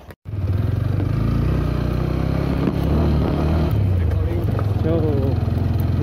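A vehicle engine running at a steady pace while driving along a rough dirt track. It is a loud, steady low drone that cuts in abruptly just after the start.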